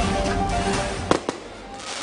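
A short music sting with held notes over a crackling haze, then two sharp fireworks bangs about a second in.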